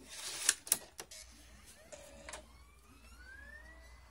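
A DVD being handled and loaded, with a few sharp plastic clicks, then a laptop's optical disc drive spinning up with a smooth rising whine.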